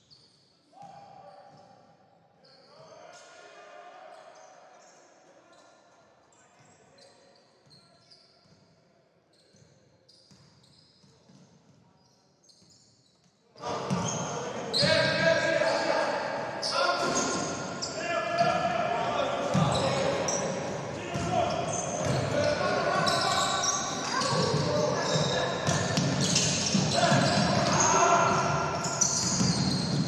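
Live basketball game sound in a large hall: the ball bouncing on the hardwood court, sneakers squeaking and players calling out. It is faint at first and turns suddenly much louder about halfway through.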